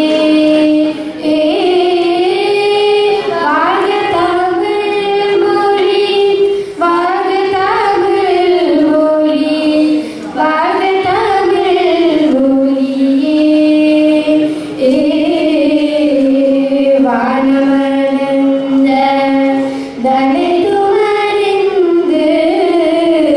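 Two girls singing a song together into microphones, a single melody of long held notes that glide from pitch to pitch.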